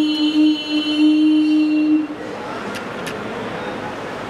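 A woman's voice over a microphone holds one long sung note, which breaks off about halfway through. A steady rushing noise with a couple of faint clicks follows.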